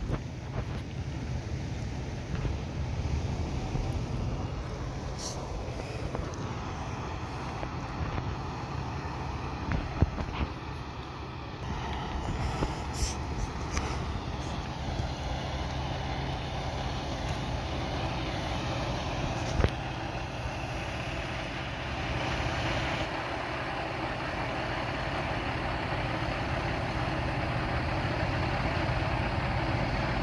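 Fire engine idling, a steady low rumble that grows louder toward the end, with a few scattered knocks.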